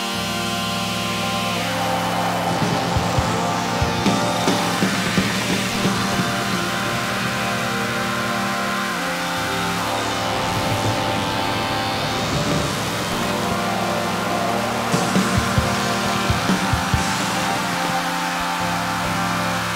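Live electronic music played on a MIDI keyboard through Ableton Live: held synthesizer chords over a steady bass, with clusters of sharp percussive hits a couple of seconds in and again near the end.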